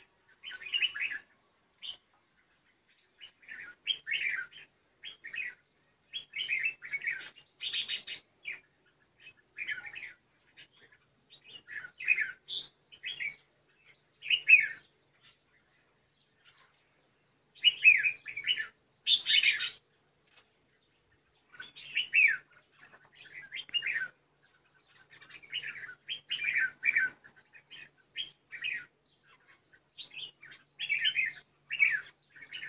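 Red-whiskered bulbuls singing at a cage trap: short, bright chirping phrases, one after another with brief pauses, loudest about eight seconds in and again just before twenty.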